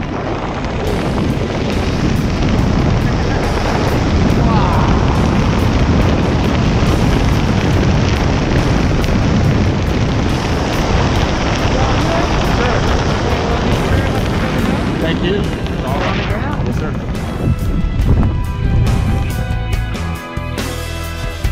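Wind rushing over the microphone of a handheld camera under a tandem parachute canopy, a loud, steady buffeting. Music comes in near the end.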